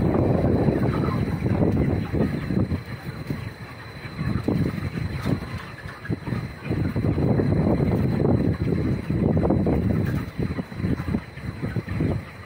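Wind buffeting the microphone: uneven low rumbling gusts that rise and fall, under a faint steady high tone.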